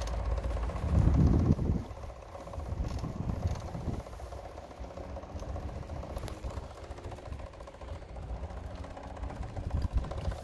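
Rumble of a small vehicle rolling along an asphalt path, with wind and handling noise on the phone's microphone; a loud low buffet about a second in.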